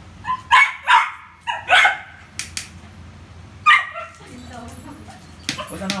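A poodle barking at a balloon it is playing with: about six short, sharp barks in the first four seconds.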